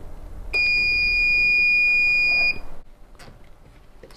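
AkvoLife Mini water ionizer's electronic beeper sounding one steady, high-pitched beep of about two seconds as its countdown timer reaches zero, signalling the end of the ionization cycle.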